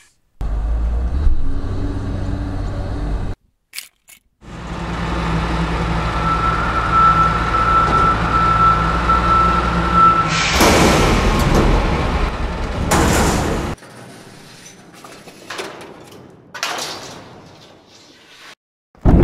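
Dubbed-in heavy truck sound effect: a low engine rumble that stops after a few seconds, then starts again with a steady whine of the tipping bed, followed by a loud rush of the load sliding out about ten seconds in, then a few quieter clicks.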